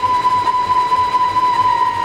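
Devotional accompaniment instrument with a violin-like tone holding one long, steady note through a pause in the narration, over a faint low pulsing beat.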